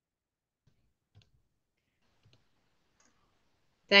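Near silence broken by four faint, short clicks spread out over a few seconds, with a voice starting right at the end.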